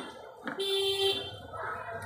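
A steady horn-like tone sounds once for under a second, the loudest thing in this stretch, just after a sharp metal click from hands working at a motorcycle's rear axle and chain adjuster.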